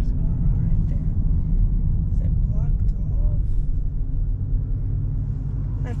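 Dodge Charger Scat Pack's 6.4-litre HEMI V8 running at low revs in slow traffic: a steady, deep rumble heard from inside the cabin.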